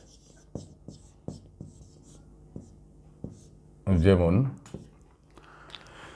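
Felt-tip marker writing on a whiteboard: a run of light, irregular taps and strokes as letters are drawn. A short spoken word about four seconds in is the loudest sound.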